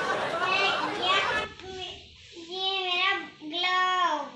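A young girl's voice: brief speech, then two long, drawn-out sing-song syllables in the second half.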